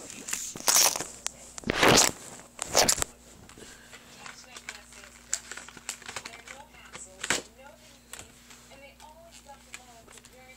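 Plastic blister packaging crinkling as it is handled, in three loud rustling bursts over the first three seconds, then a single sharp click about seven seconds in.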